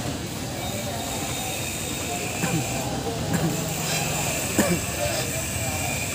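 Outdoor market ambience: a steady background rumble with distant voices, and a few short sounds about halfway through.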